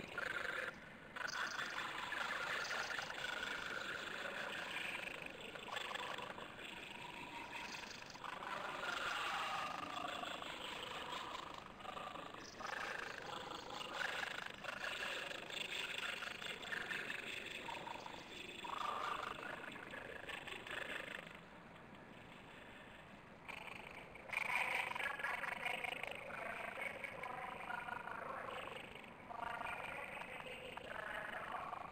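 Garbled, warbling voice audio over a video-conference link, the words not intelligible, dipping quieter for a few seconds past the middle.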